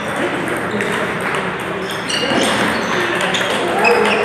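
Table tennis ball hits: a string of sharp, irregular clicks of the celluloid ball off paddles and tabletops, with voices in the background.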